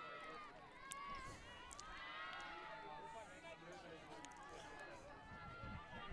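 Faint, distant voices of several players calling and talking to each other across an open sports field, overlapping one another.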